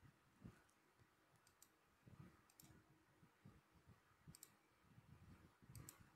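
Near silence with faint clicks of a computer mouse, coming in quick pairs about four times, a second or two apart, over soft low thumps.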